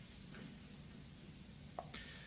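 Near silence: faint room tone with a low hum, and one small click shortly before the end.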